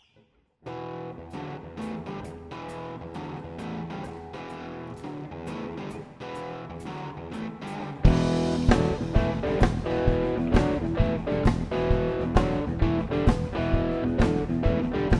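Rock band playing live: an electric guitar intro starts under a second in, and the full band comes in loudly with drums about eight seconds in, keeping a steady beat.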